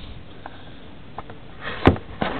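Cardboard card box being pried open by hand: a few faint ticks, then a short scrape and a sharp snap near the end.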